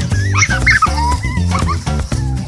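Upbeat Latin-style background music with a steady beat, and over it a puppy giving a few short, high yips and whines.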